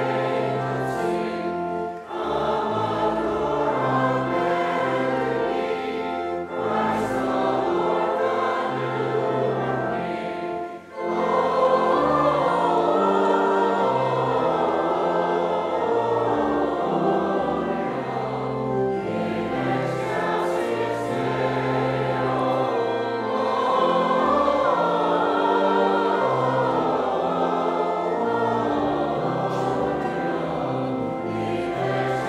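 Church choir singing a hymn with pipe organ accompaniment, in sustained phrases with short breaks between lines about 2, 6 and 11 seconds in.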